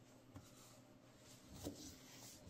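Near silence with faint rustling of fabric being handled and smoothed by hand: a small click about a third of a second in, and a brief, slightly louder rustle near the end.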